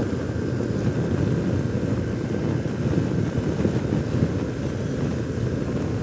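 2008 BMW R1200R riding at a steady cruise on a hard-packed gravel road: its boxer-twin engine running evenly under steady road and wind noise.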